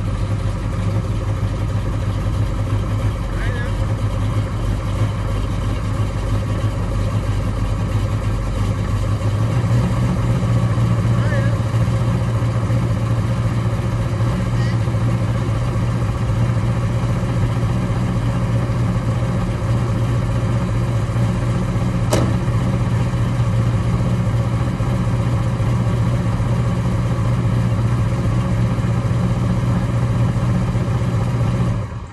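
Buick Regal's V6 engine idling steadily, its low rumble growing a little louder about nine seconds in. A single sharp knock comes about 22 seconds in.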